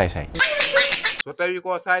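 A person's voice speaking, then laughing in a quick run of short 'ha' sounds in the second half.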